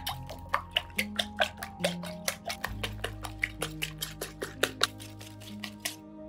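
Coil whisk beating raw eggs in a ceramic bowl, the wire clicking and splashing against the bowl in a quick rhythm of about four strokes a second, over soft background music.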